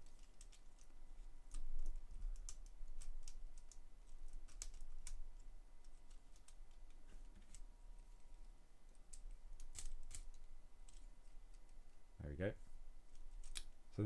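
LEGO Technic plastic parts clicking and rattling against each other as they are handled and fitted together by hand, in irregular sharp clicks. A brief vocal sound a little before the end.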